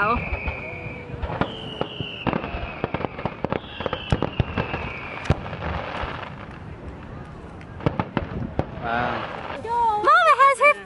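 Aerial fireworks display: a run of irregular bangs and crackles from bursting shells, with a few long high whistles that slide slowly downward.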